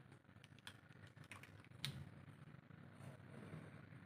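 Faint clicks and taps of felt-tip markers being handled, switching from a pink marker to a blue one, with one sharper click a little under two seconds in.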